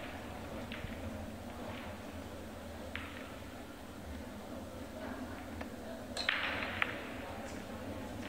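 Pool shot: the cue tip strikes the cue ball about six seconds in, followed half a second later by a sharp click of ball on ball.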